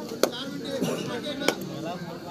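Two sharp claps, about a second and a quarter apart, over the voices of a crowd of spectators and players.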